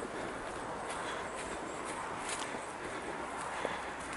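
Bare feet walking on a dirt and stone forest trail: soft, irregular footsteps over a steady faint hiss.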